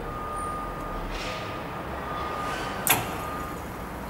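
Fuel injector test bench draining test fluid from its measuring cylinders after a flow test: a steady low hum with a faint thin whine, and a single sharp click about three seconds in.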